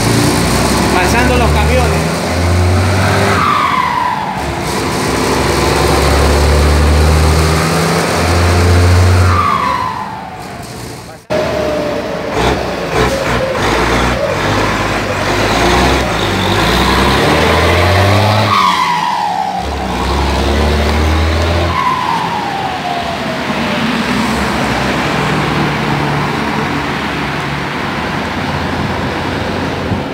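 Turbo-diesel engine of a Mercedes-Benz 1721 bus pulling through its gears, its KKK K27 turbocharger fitted with a whistle insert ('pente') so that it whistles. Four times, twice in each half, the whistle falls sharply in pitch as the throttle is lifted and the turbo spools down.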